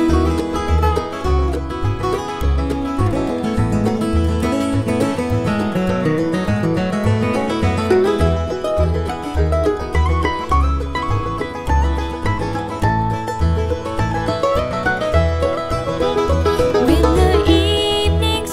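Bluegrass band playing an instrumental break with no singing: plucked string instruments over steady bass notes.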